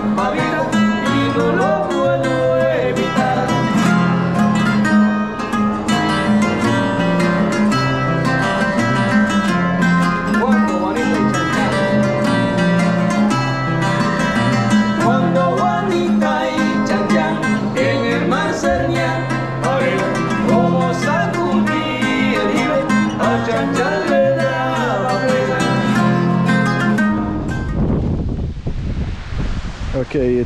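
Live acoustic guitar music: two acoustic guitars strummed and picked, with a man singing over a steady bass line. About 27 seconds in the music cuts off and gives way to a low rush of wind on the microphone.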